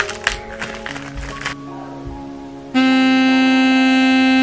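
Plastic bag crinkling and clicking as a toothbrush head is unwrapped and fitted. Then, about two and a half seconds in, an electric toothbrush is switched on and buzzes loudly at one steady pitch.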